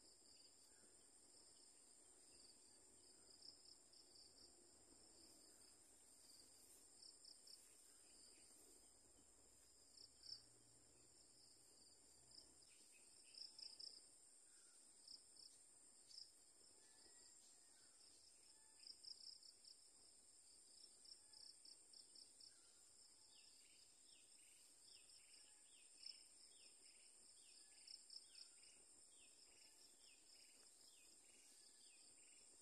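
Near silence: a faint, steady high-pitched insect drone, with short chirps scattered through it.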